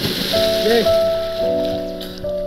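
Water splashing as a body hits the river, a spray hiss that fades over about a second and a half, under background music with sustained keyboard-like notes.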